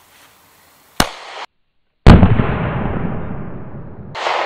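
A 9mm pistol shot about a second in, a sharp crack with a short tail that cuts off. Just after two seconds comes a much louder shot, heard up close, that fades away slowly over the following two seconds.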